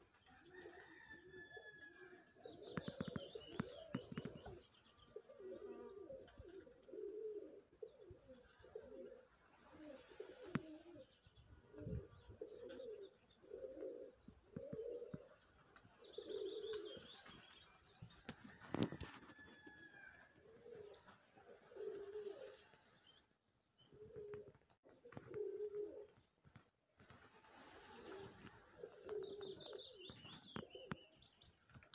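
Pigeons cooing over and over in low phrases, with small birds chirping and trilling high above them now and then. A few sharp clicks cut in, the loudest a little past the middle.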